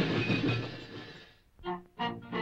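Cartoon crash sound effect of a body falling flat on the floor: a loud, noisy crash fading away over about a second and a half, then a brief pitched note near the end.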